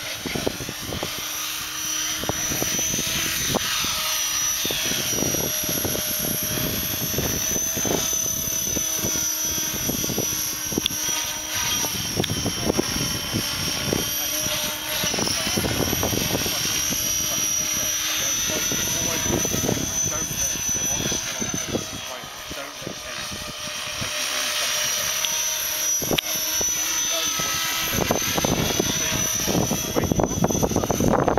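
Align T-Rex 550 electric RC helicopter in flight: a high motor-and-gear whine over the steady chop of the rotor blades. Its pitch and loudness sweep up and down as it manoeuvres, with a brief dip in loudness a little past two-thirds of the way through.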